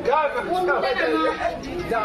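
Speech only: stage dialogue in Bodo, spoken animatedly into the stage microphones.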